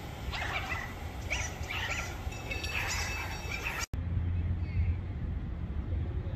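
Outdoor street background: a steady low rumble, with faint distant voices in the first few seconds. The sound drops out for an instant about four seconds in, and after that the low rumble is louder.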